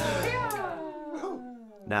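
A man's singing voice holds a long note that slides steadily downward and fades, as the backing band drops out about half a second in. The band comes back in right at the end.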